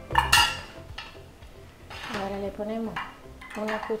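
Metal kitchen tongs set down with a ringing clink about a quarter second in, followed by lighter clinks of a spoon in a small bowl.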